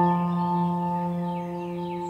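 A single struck bell-like chime, in the manner of a singing bowl, ringing on with several steady overtones and slowly fading. Faint high chirps come in about halfway through.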